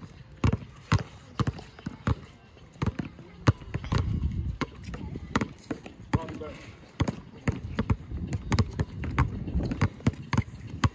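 Basketballs being dribbled on a brick-paved outdoor court: quick, uneven bounces, sometimes two balls at once, with no pause.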